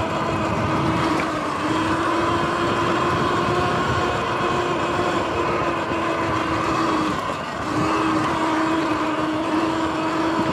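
Sur-Ron X electric dirt bike ridden fast on a dirt trail: a steady high electric drivetrain whine over a continuous rumble of riding noise. The whine breaks off briefly just after seven seconds in and then comes back.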